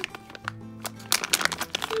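Background music with steady low notes, over the crinkling of a clear plastic bag of toy pieces being squeezed and turned in the hands, the crinkling busier in the second half.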